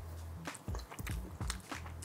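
A person chewing a bite of pizza, with several short, soft crunches.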